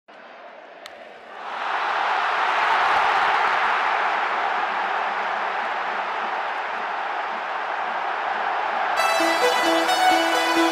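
A single sharp crack of a baseball bat hitting the ball a little under a second in, then a large stadium crowd cheering, swelling within half a second and staying loud. Music comes in near the end.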